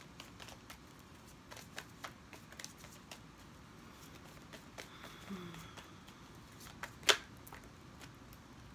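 A deck of tarot cards being shuffled by hand: soft, scattered clicks and flicks of the cards, with one sharper snap near the end.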